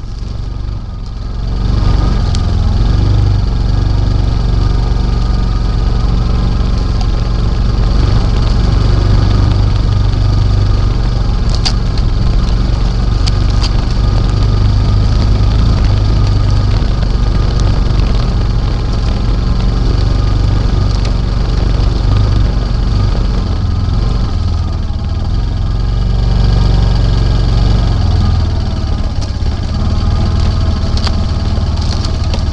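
ATV engine running steadily while the machine drives across a field, its low rumble shifting up and down in steps as the throttle changes, with a few brief ticks about twelve seconds in.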